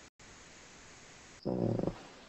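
Faint line hiss, then about a second and a half in, a short low-pitched voiced sound from a person, lasting about half a second.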